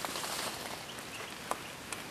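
Quiet forest background hiss, with a few light crackles and clicks of dry leaf litter as a person crouches and shifts low over the ground.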